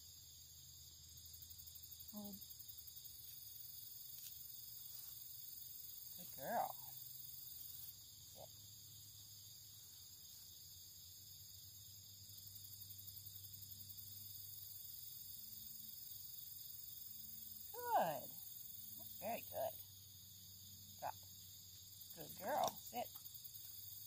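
Steady high-pitched chorus of insects chirring in the background, with a few short spoken dog commands breaking in.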